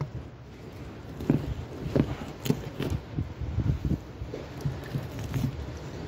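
Knife cutting through a conger eel's neck to take the head off: a string of irregular soft knocks and crunches against the cutting surface.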